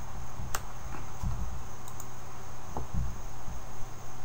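Steady room-tone hiss with a faint high-pitched whine and a low rumble that rises and falls, broken by two or three faint clicks.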